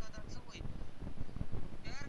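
A woman laughing in short, high-pitched, bleat-like bursts, over a steady low rumble.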